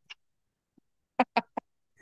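A man's brief laughter: three quick 'ha' bursts a little over a second in, after a gap of silence.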